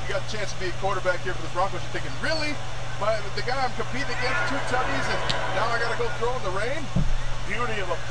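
Men's voices talking continuously at a moderate level, over a steady low hum: commentary from a televised football game.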